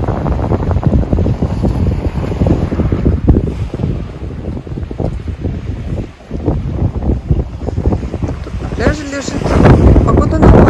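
Wind buffeting the phone's microphone, a loud, uneven low rumble that dips briefly past the middle and swells again near the end.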